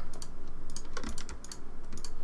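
Irregular, sharp clicks of a computer keyboard and mouse being worked at a desk, several in quick succession.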